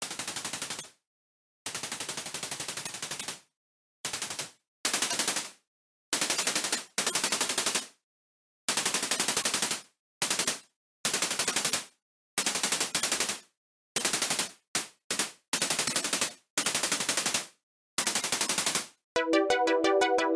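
Electronic track intro of gated, rattling noise bursts like machine-gun fire, each cut off abruptly with silence between. The bursts come in uneven lengths and get louder after a few seconds. Near the end a sustained synthesizer chord comes in.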